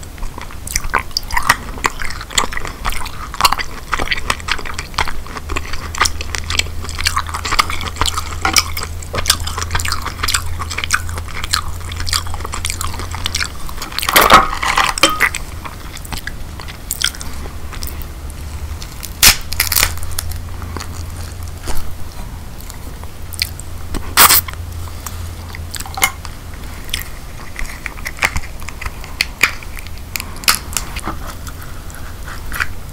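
Close-miked chewing and wet mouth sounds of eating king crab meat dipped in Alfredo sauce, with clicking and crackling throughout. A few louder sharp cracks, about halfway through and twice later, as the king crab leg's shell is broken apart by hand.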